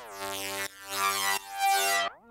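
A soloed synth lead playing sustained notes with sidechain compression: its level ducks to make room for the kick and snare and swells back each time, giving a pumping effect. The notes change about two-thirds of a second in and again near the middle.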